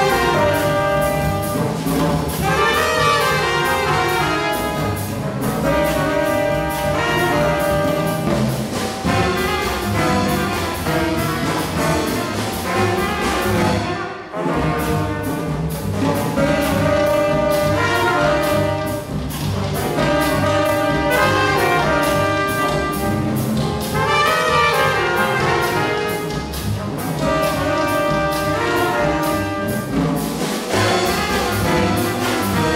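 Live jazz: a horn section of trumpet, saxophone and trombone playing the tune's melody together over a swinging rhythm section of drums and upright bass. Nearly everything stops for a brief break about fourteen seconds in, then the band comes back in.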